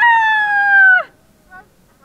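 A loud, high-pitched shout held for about a second, its pitch sliding slightly down before it breaks off.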